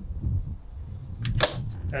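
The plastic lid of a 12-volt SetPower chest fridge shutting with a single sharp knock about a second and a half in, over low rumbling handling noise.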